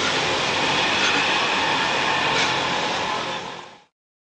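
Steady rushing background noise that fades away about three and a half seconds in.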